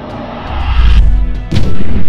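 Logo-reveal sound effects over intro music: a rising whoosh that swells into a deep boom about half a second in, then a sharp hit about a second and a half in.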